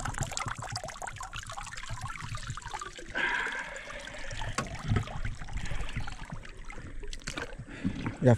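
River water trickling and splashing as a large peacock bass is lifted out of the water and lowered back in. Water runs off the fish and sloshes around the wading angler.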